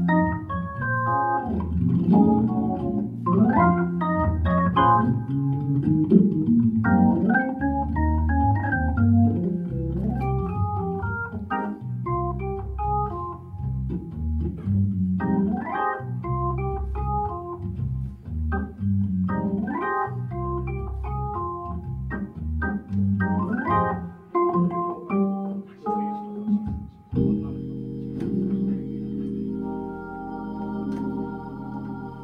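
Hammond B3mk2 organ played live: bass notes and chords under quick melodic runs. About 27 seconds in, the playing settles onto one long held chord.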